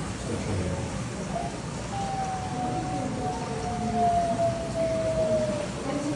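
Arctic wolf howling: one long, clear howl beginning about two seconds in and sliding slowly down in pitch for nearly four seconds. It is part of an exchange of howls with another wolf, over a steady background noise.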